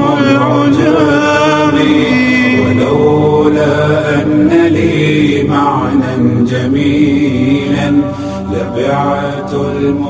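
Male a cappella nasheed singing: a drawn-out, wordless vocal line that bends in pitch, with no instruments.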